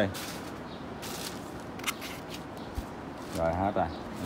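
Rustling and scraping as a pair of chrome motorcycle rear shock absorbers are handled and lifted off a foam packing sheet: a few short, separate scrapes.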